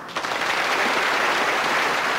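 Studio audience applauding. The applause starts abruptly and holds steady.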